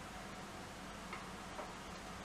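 Quiet room tone with a steady low hum and two faint soft ticks, one about a second in and one shortly after.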